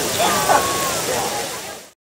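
Lady Knox Geyser erupting, a steady rush of spraying water and steam, with voices over it; the sound fades out just before the end.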